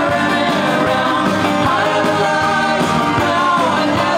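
A man singing lead over an acoustic guitar in a live, unplugged performance.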